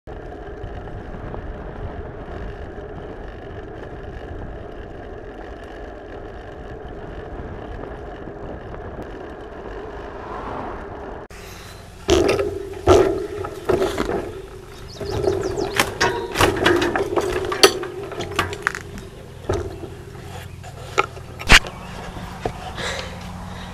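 Road bike with a handlebar-mounted camera: steady wind and tyre noise while riding on a paved road. Then, from about halfway, loud irregular knocks, rattles and scraping as the bike is ridden or pushed through brush and over rough ground and boards to a stop.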